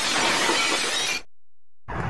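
A sudden crash of dense noise that holds for just over a second and then cuts off abruptly. After a short gap, another sound starts near the end.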